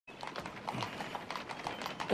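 Horse hooves clip-clopping, a quick run of about five or six strikes a second, as of horses pulling a carriage.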